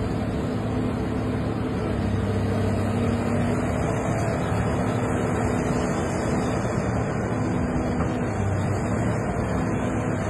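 Sumitomo hydraulic excavator's diesel engine running steadily under working load, a low even drone, as the boom swings toward the structure.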